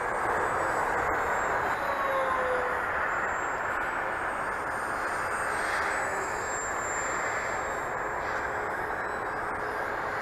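Electric RC flying wing (TowerHobby CraZe Wing on a 4S battery) flying overhead: a steady rushing sound from its propeller and airflow, with a faint motor whine that rises and falls in pitch as the plane moves about the sky.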